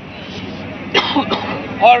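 A man clears his throat with a short, sudden cough-like burst about a second in, during a pause in his speech.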